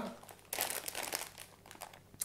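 Plastic packet of dried wholewheat fusilli crinkling and rustling as it is picked up and held out, with a scatter of small crackles, most of them in the first half.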